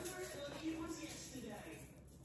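A woman's voice humming faintly in short, low hums.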